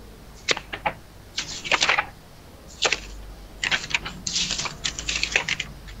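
Typing on a computer keyboard: several quick runs of key clicks with short pauses between them.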